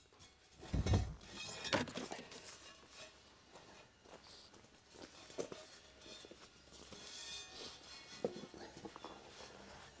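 Faint off-camera handling noises while a propeller is fetched: a heavy thump about a second in, a sharp knock soon after, then scattered light knocks and rustles.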